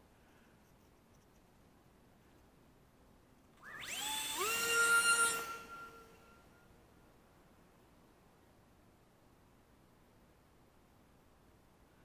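A small RC plane's electric motor and propeller whining up in pitch as the throttle is opened for launch, starting about three and a half seconds in. It holds a steady high whine for about two seconds, then fades away as the plane climbs off.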